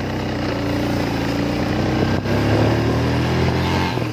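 Four-stroke motorcycle engine running while the bike is ridden, with wind and road noise; its note rises a little about halfway through as it picks up speed.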